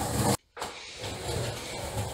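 Skateboard wheels rolling on a paved concrete floor, a steady low rumble. The sound drops out completely for a moment about half a second in.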